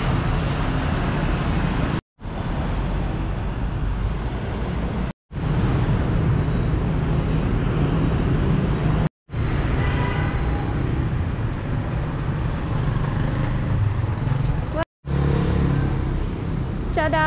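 Road traffic noise on a city street: a steady wash of passing vehicles with a heavy low rumble. It is broken by four brief silent gaps where the recording cuts between short clips.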